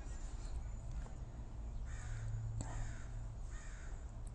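A few faint bird calls, short and spaced, about two seconds in and again near the end, over a low steady hum.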